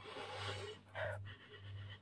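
A woman sniffing cream rubbed into the back of her hand, three soft breaths in through the nose, as she tries to smell its fragrance.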